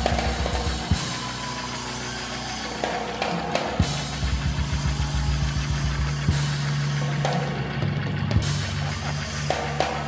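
Live church band music: a drum kit playing quick beats over held low notes, backing the pause at the climax of a whooped sermon.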